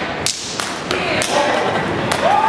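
Step team's stomps and claps, a run of sharp strikes about a third of a second apart, with voices calling out between them.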